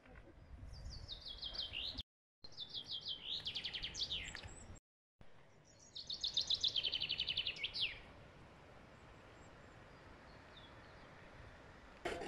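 A songbird singing three phrases in the first eight seconds. Each phrase is a fast run of repeated notes falling in pitch and ends in a quick downward flourish. The sound drops out briefly between the first phrases.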